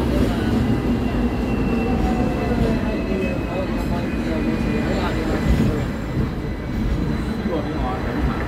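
Hong Kong double-decker electric tram running along its tracks, heard on board: a steady rumble of wheels on rail, with faint whining tones that slide slowly lower in pitch.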